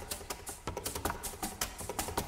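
Percussive dance music with the low bass beats dropped out, leaving a quick stream of dry clicks, several a second.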